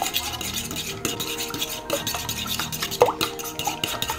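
Fork whisking raw eggs in a bowl: a fast, even run of light clinks and scrapes of the fork against the bowl.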